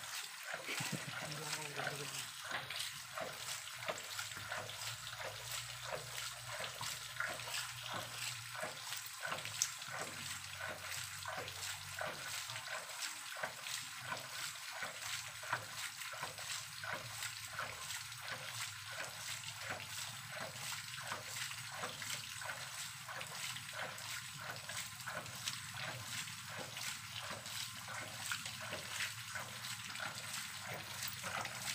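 Homemade 4-inch PVC hydraulic ram pump running. Its waste valve knocks shut in a steady rhythm a little faster than once a second, while water splashes and sprays out around the valve with each cycle.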